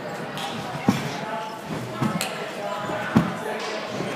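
Three dull thuds about a second apart, over background voices in a gym.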